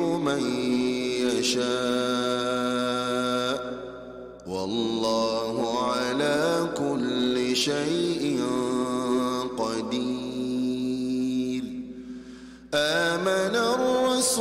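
A man reciting the Quran in melodic tajweed chant, drawing out long held notes. The voice breaks off briefly about four seconds in and again near the end.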